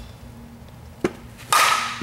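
Softball bat striking a pitched softball about one and a half seconds in: a sharp crack with a short ringing tone that fades away. A smaller, sharp knock comes about half a second before it.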